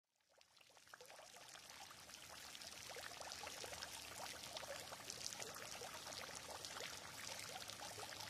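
Faint water splashing and trickling from a stone fountain, many small drops spattering into its basin. It fades in from silence over the first two or three seconds and then runs on evenly.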